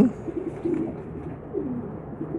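Pigeons cooing softly: a few short, low coos.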